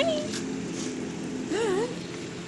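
A puppy gives one short, wavering whine about one and a half seconds in, over a faint steady hum.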